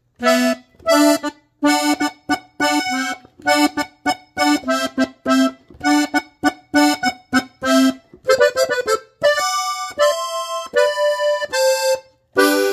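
Diatonic button accordion in G playing a norteño melody. It starts with short, detached notes in a steady rhythm, and about eight seconds in changes to longer held notes.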